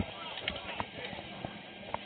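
Footsteps and the knocking of gear as someone moves about wearing a body-worn camera: a few faint, irregular knocks, with distant voices murmuring underneath.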